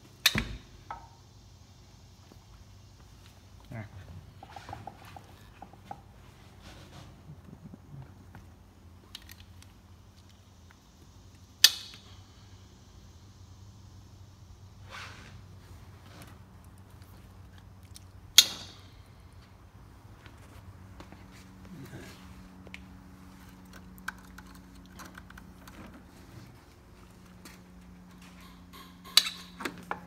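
Hands working the fuel rail and injectors of a race engine's intake manifold: four sharp, loud clicks or knocks, spread well apart, with smaller handling noises between them over a steady low hum.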